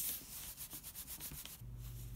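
Quick, rapid back-and-forth rubbing strokes on paper, like a hand or eraser worked over a pencil-drafted sheet. A low steady hum starts near the end.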